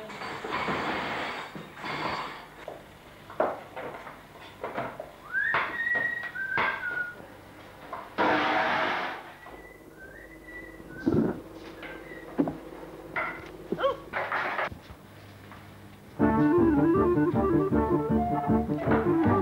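Kitchen work sounds: scattered clatter and knocks of dishes and utensils, two bursts of hissing noise and a few brief high squeaky glides. About two seconds before the end, instrumental music comes in loudly.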